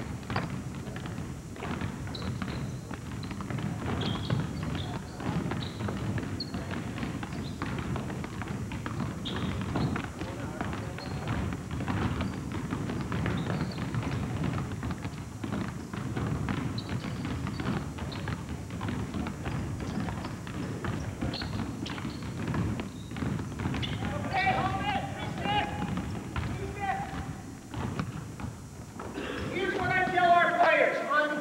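Several basketballs being dribbled on a hardwood gym floor, overlapping irregular bounces that run on without a break, with players' voices briefly in the background a little after the middle.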